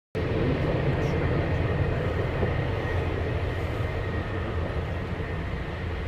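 Boeing 757-300 airliner's jet engines on landing approach, heard as a steady rumble with a faint high whine.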